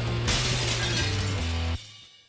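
TV programme title music with a shattering crash sound effect about a quarter second in, laid over a held bass note. It all cuts off sharply near the end, leaving a brief fading tail.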